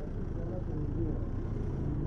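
Steady low rumble of slow street traffic, with motor scooters and cars in the lane.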